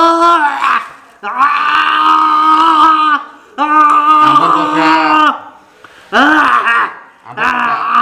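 A man wailing in a series of long, loud cries, each held at one pitch and dropping away at the end, with short gaps between.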